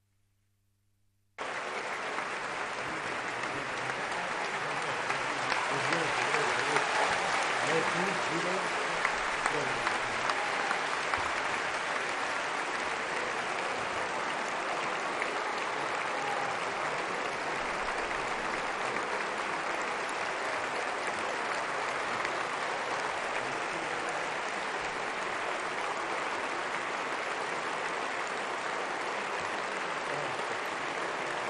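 A large assembly applauding in a long standing ovation. The clapping cuts in abruptly about a second and a half in, swells for a few seconds, then holds steady.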